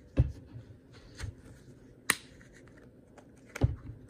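Handling noise from a plastic yogurt cup being opened close to the microphone: four sharp clicks and knocks, spaced about a second apart.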